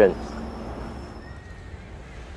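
A voice finishes a word, then steady low background noise with a faint, thin high whistle that gives way to a slightly lower faint tone.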